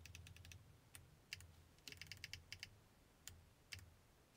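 Faint computer keyboard typing as a number is entered: short quick runs of key clicks near the start and about halfway through, with single key presses in between.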